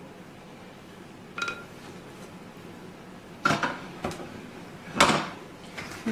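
A handful of knocks from a mixing bowl and spatula against the foil baking pan as the last of the batter is scraped out: one short ringing clink, then three harder knocks, the loudest near the end.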